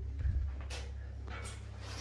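Quiet room with a low steady hum and two faint clicks, the first under a second in and the second past the middle.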